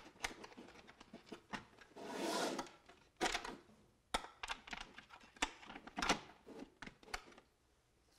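Light clicks and taps of small parts being handled and fitted on a drone's dome lid cover, with a short soft rustle about two seconds in.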